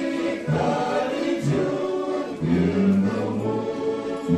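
Mixed vocal ensemble of men's and women's voices singing a Lithuanian song together, accompanied by two accordions.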